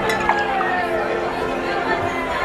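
Murmur of crowd chatter over held background music, with a clink of glasses just after the start.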